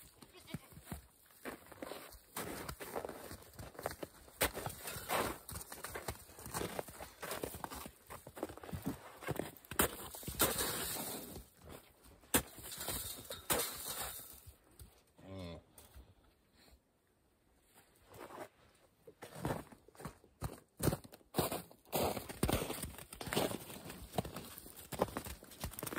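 Cattle in a pen, with a short pitched call about fifteen seconds in, among many scattered footsteps and knocks.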